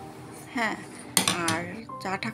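Dishes and cutlery clattering in a kitchen, with a sharp clink about a second in.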